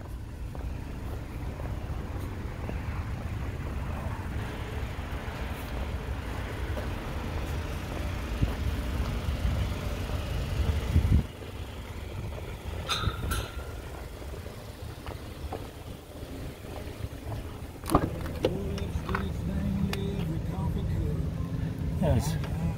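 A steady low rumble around a parked car that drops away abruptly about halfway through. Near the end come a sharp knock and a few clicks as the car's rear door is opened.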